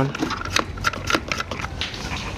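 Plastic hose connector being screwed by hand into a pressure washer's water inlet: scattered small clicks and creaks of the threads turning.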